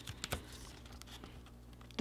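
Faint clicks and a light rustle of a small spiral-bound booklet being opened and its pages handled, mostly in the first half second.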